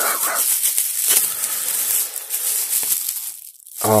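Plastic bubble wrap crinkling and crackling as hands unwrap a folding knife from it, stopping a little after three seconds in.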